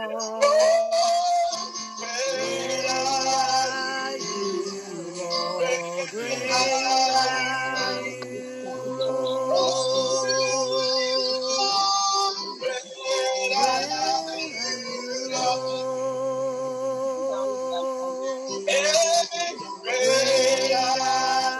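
A man and a woman singing a gospel praise-and-worship song together, over sustained electronic keyboard chords.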